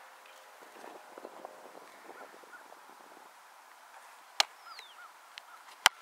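A football punted: the loud, sharp smack of the foot striking the ball just before the end, preceded about a second and a half earlier by a smaller sharp smack of the ball. Faint bird chirps in between.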